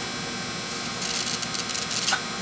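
Breath blown through a small brass check valve: a hiss of air passing through it that starts just under a second in and comes in quick pulses, showing that the valve lets air flow in one direction.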